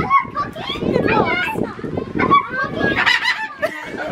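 Children's voices with a bird's calls mixed in.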